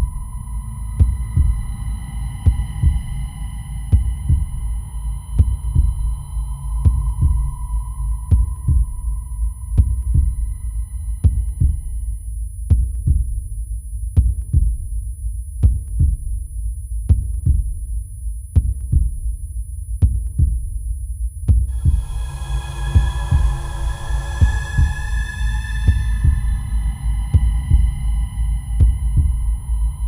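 An instrumental film background-score cue built on a deep, regular heartbeat-like pulse, over a sustained synth drone. The drone fades out about twelve seconds in, and a brighter, higher sustained layer comes in a little past twenty seconds.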